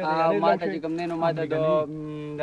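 A man's voice, drawn out and continuous, its pitch rising and falling in a singsong way.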